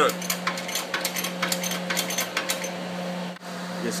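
Hand-cranked shop press being worked down on a dimple die in a thin steel gusset plate: a run of light metallic clicks and ticks, several a second, thinning out after about two and a half seconds. A steady low hum runs underneath.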